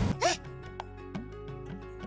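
Background music under a TV scene: a quick swooping sound effect just after the start, then quiet held tones with scattered light ticks.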